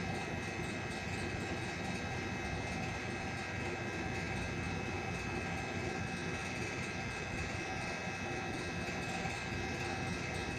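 A steady mechanical hum with several steady tones in it, unchanging in level throughout.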